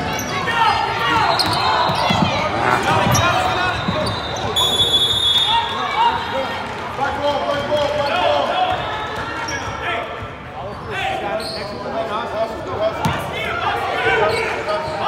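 Basketball game in a gym: a basketball bouncing on the hardwood floor amid players' and spectators' voices, with a short referee's whistle blast about five seconds in that stops play.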